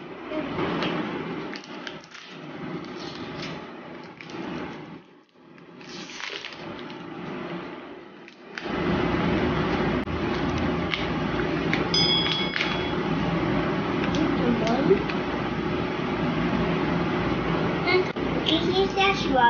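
A snack package rustling and crinkling as it is opened, in irregular bursts for about eight seconds. Then a steady hum suddenly takes over, with a short high beep about twelve seconds in.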